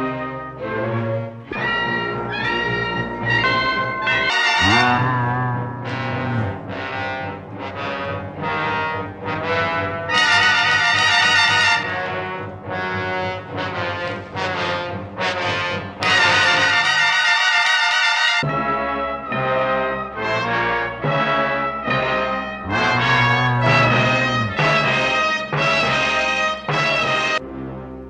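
Dramatic orchestral TV underscore led by brass, with short stabbing notes and two long, loud held chords about ten and sixteen seconds in.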